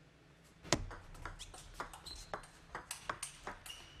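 Table tennis ball in play: a sharp click about 0.7 s in as the point starts, then a quick run of light clicks as the celluloid-type ball strikes the rubber-faced paddles and bounces on the table in a fast rally. Two brief high squeaks sound near the middle and near the end.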